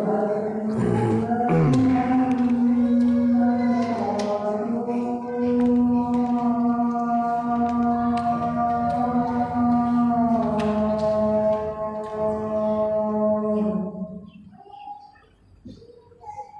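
Muezzin's call to prayer for Isha: one long, drawn-out sung phrase held for about fourteen seconds, then fading out near the end.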